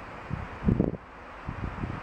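Wind buffeting the microphone in two low rumbling gusts, the stronger about half a second in and a weaker one near the end, over a steady outdoor hiss.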